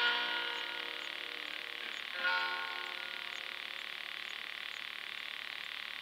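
Guitar chord ringing out at the end of a song, with one more strummed chord about two seconds in that also fades away. Under it runs a steady, pulsing chirring chorus.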